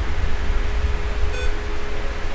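Steady low rumble and hiss with a thin constant hum underneath, and a short electronic beep about one and a half seconds in.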